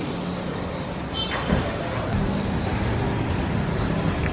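Street traffic with a vehicle engine running close by, its steady low hum growing stronger about two seconds in; a brief falling sound stands out at about a second and a half.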